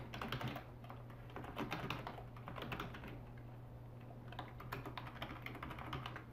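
Typing on a computer keyboard: quick, irregular runs of keystrokes with brief pauses between them, fairly quiet.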